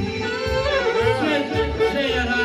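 A man singing into a microphone with a wavering, ornamented melody, over live violin and keyboard accompaniment with a steady low beat.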